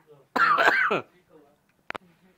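A person clearing their throat once, loud and harsh for about half a second, the pitch dropping at the end. A single sharp click follows near the end.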